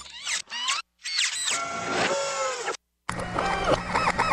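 Electronic glitch-transition sound effects: quick rising and falling synth sweeps, then a longer stretch of falling tones, a brief dead cut, and a warbling synth sound over a low hum starting near the end.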